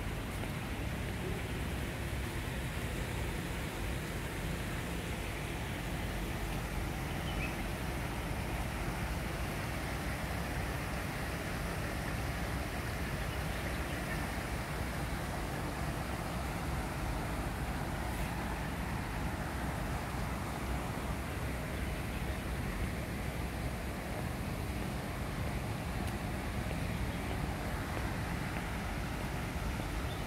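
Steady outdoor background noise: an even, low-weighted hiss and rumble with no distinct events.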